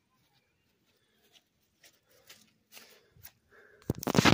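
A few soft footsteps on wet grass, coming closer. Near the end there is a sudden loud thump and rustle as the camera lying on the grass is picked up.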